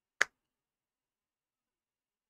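A single short, sharp click a fraction of a second in.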